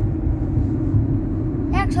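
Steady low rumble inside a moving car's cabin: engine and road noise. A man's voice starts near the end.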